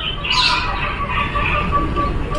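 Birds calling in the garden with thin, wavering chirps, over a low rumbling noise.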